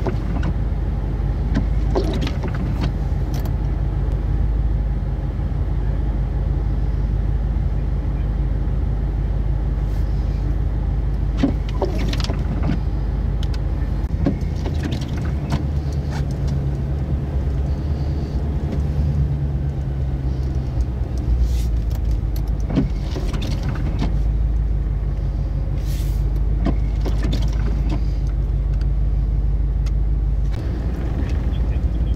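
Steady low rumble of a car's engine and cabin, heard from inside the vehicle, with a few short clicks here and there.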